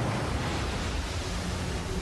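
Loud storm sound effect of strong wind and rough lake water, a steady rushing noise that cuts in suddenly at full strength.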